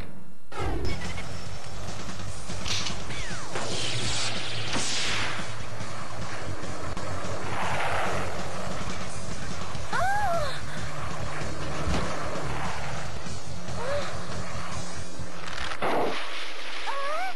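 Cartoon soundtrack: background music under a busy run of sound effects, with swooshing sweeps a few seconds in and a crash. A few short high squeaks come around the middle and near the end.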